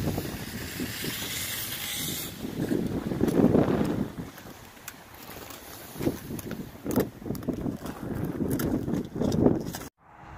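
Wind buffeting the microphone in gusts, with a few short crunches.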